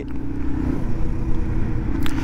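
Yamaha TW200's air-cooled single-cylinder four-stroke engine running steadily while cruising, with a low rumble and wind noise.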